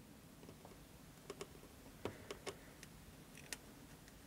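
Near silence broken by a handful of faint, sharp ticks, a few about a second in, more around two seconds and one near three and a half seconds: rosin flux spitting as a soldering iron melts solder onto the side of a model railroad rail to pre-tin it.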